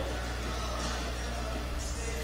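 Steady low hum under faint, even background noise, with no distinct events.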